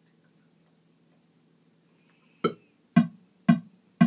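Electric bass guitar notes played in an even pulse, about two a second, starting a little past halfway in; each note is short and sharp, with a low steady hum beneath and near quiet before the first one.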